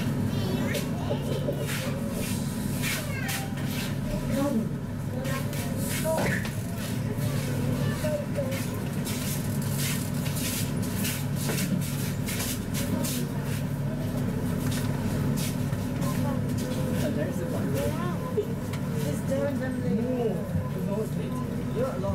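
Indistinct voices of people talking, over a steady low hum with frequent light clicks and rattles, busiest in the middle.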